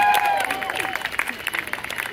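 Spectators clapping and cheering, with one voice holding a long whoop that trails off about a second in, while scattered claps carry on.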